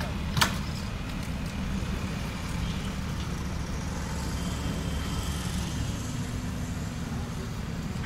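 Petrol dispenser pump running steadily as fuel is pumped through the nozzle into a metal bucket, with one sharp click about half a second in.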